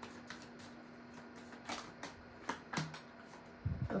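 A tarot deck being shuffled by hand: a string of soft, short card flicks and snaps at irregular intervals.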